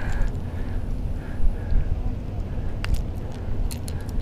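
Wind rumbling on the microphone, with a few sharp little clicks in the last second or so as a plastic crankbait and its treble hooks are worked free of a fish's mouth.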